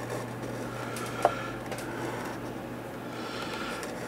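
Faint rustle of small wires and plastic connectors being handled and fed through by hand, with one short click about a second in, over a steady low hum.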